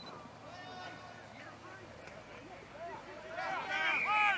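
Voices of players and onlookers calling out across an open field, with no clear words, building to a loud, high-pitched call near the end.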